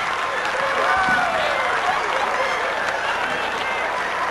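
Audience applauding steadily, with voices in the crowd calling out over the clapping.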